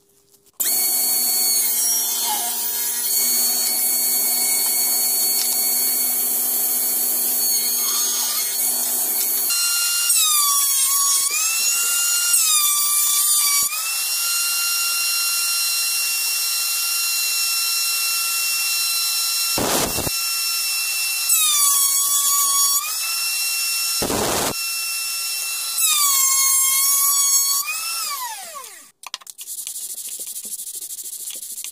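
Electric router in a router table, switching on abruptly and running at high speed. Its whine sags in pitch four times as it bites into the wood of a dowel, with two sharp knocks in between, and it winds down with a falling pitch near the end.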